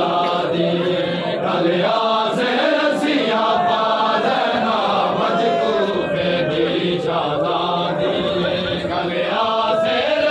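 Group of men chanting a noha, a Shia mourning lament, in unison, with a few sharp slaps of chest-beating (matam) among the voices.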